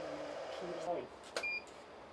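Faint murmur of voices in a photo studio. About one and a half seconds in comes a sharp click and then a short high beep: a studio strobe firing with the camera shutter and beeping as it recycles.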